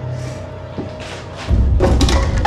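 Tense film score with a steady held drone. About one and a half seconds in, a deep low impact hits and keeps rumbling.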